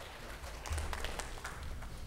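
A congregation clapping: many hand claps swell about half a second in, then thin out toward the end.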